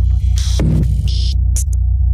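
Glitch-style logo sting: a loud, steady deep electronic drone with short crackling digital glitch bursts and a brief downward sweep partway through.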